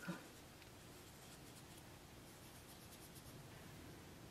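Near silence, with faint scratchy rubbing of fingertips on pressed-powder eyeshadow pans during swatching.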